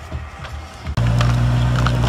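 A steady low-pitched hum with even overtones starts abruptly about a second in and holds unchanged.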